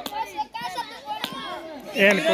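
Children's voices and calls, with two sharp wooden clicks a little over a second apart: a gulli danda stick striking the small wooden gulli.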